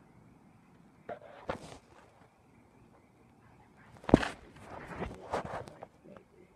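Fireworks going off: a sharp bang about four seconds in, followed by nearly two seconds of crackling, with a couple of smaller pops earlier.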